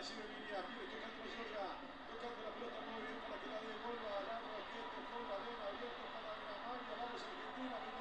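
Faint speech throughout, low under a steady hiss: the match commentary of a television football broadcast playing quietly in the background.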